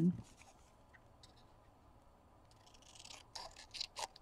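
Scissors cutting a small piece of printed paper in half: a few quiet, crisp snips starting about three seconds in.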